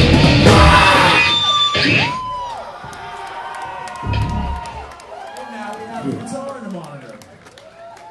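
A live heavy metal band at full volume with drums and distorted guitars, ending about two seconds in. The crowd then cheers with scattered whoops and yells, and a low thud comes through about four seconds in.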